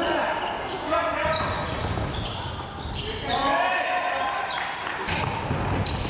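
Live basketball play on a hardwood court: the ball bouncing on the floor as it is dribbled and passed, with voices calling out a couple of times.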